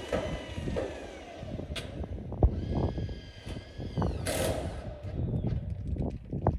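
Power drill driving screws into corrugated metal roofing sheets: the motor whines in short runs, one winding down in the first second and a steady run a little before the middle that slows as it stops. Knocks and rattles of the metal sheets come between the runs.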